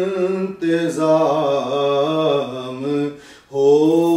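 A man reciting a naat, a devotional Urdu poem in praise of the Prophet, sung solo without instruments in long held, wavering phrases. There are short breaths about half a second in and again after three seconds.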